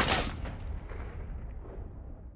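Automatic sentry-gun fire in the TV episode's soundtrack: the last rapid shots right at the start, then a low rumble that dies away.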